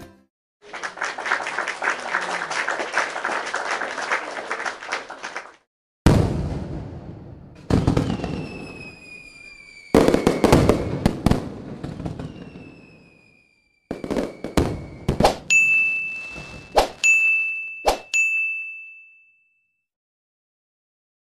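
Animated end-screen sound effects. First a dense crackle lasts about five seconds. Then come a few sharp hits with fading tails and slowly falling whistling tones, and near the end three clicks, each followed by a high ringing ding.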